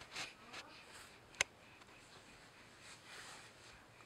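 Faint rustling and rubbing as a baby handles a plastic TV remote on a fabric play mat, with one sharp click about a second and a half in.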